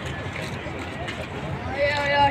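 Several people talking at once, faint and overlapping over a low outdoor background noise, with one louder voice starting near the end.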